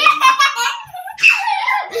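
A young child giggling in a high pitch, with a short break about a second in.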